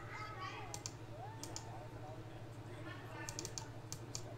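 Computer keyboard keystrokes and mouse clicks as a spreadsheet is edited: scattered sharp clicks, some in quick pairs and small clusters, over a steady low hum.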